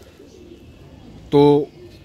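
A strutting white tom turkey's faint low drumming. A man says a single short word about two-thirds of the way through.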